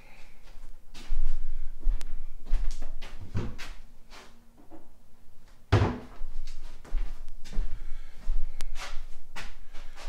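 Kitchen cupboard doors and drawers being opened and shut: a string of knocks, clicks and thuds, the loudest about a second in and again about six seconds in, while a tasting glass is fetched.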